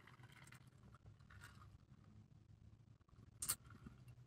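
Near silence: quiet room tone inside a car, with one brief faint noise about three and a half seconds in as a plastic bubble-tea cup is handled.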